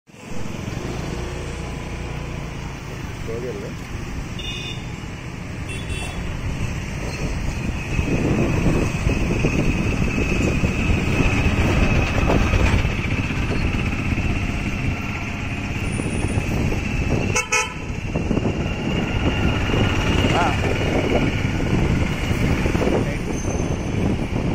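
Busy street traffic: a steady rumble of motorcycles and other vehicles, with short horn toots and voices in the background. A single sharp knock comes about two-thirds of the way through.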